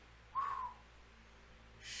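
One short whistled note from a man, about a third of a second long and a little under half a second in, rising slightly and then falling away.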